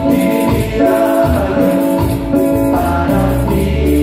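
Live band music: a male lead voice sings over held saxophone notes, a bass line and a steady percussion rhythm.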